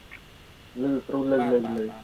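A person's voice coming through a video call, speaking for about a second from a little under a second in.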